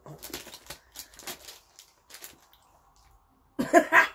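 Soft clicks and rustles for the first couple of seconds, then a short, loud burst of laughter near the end.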